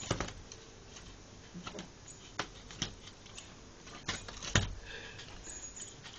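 Scattered sharp taps and scratches very close to the microphone, about six over a few seconds, with faint rustling between them.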